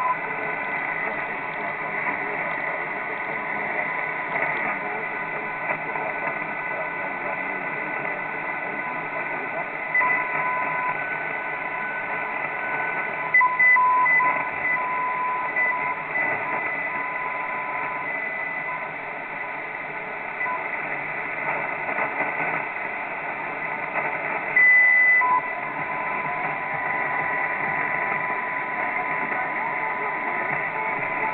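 Longwave radio reception through a communications receiver in lower-sideband mode as it is tuned down the band: a steady hiss of static with carrier whistles at fixed pitches that come and go as the dial steps past stations, and brief louder spots about ten, thirteen and twenty-five seconds in.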